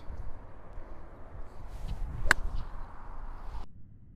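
Low wind rumble on the microphone with one sharp crack about two seconds in that rings briefly. The sound cuts off abruptly near the end.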